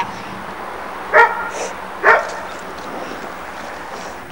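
A dog barking twice, a little under a second apart.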